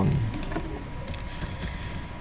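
Keys on a computer keyboard being typed: a string of short, uneven clicks.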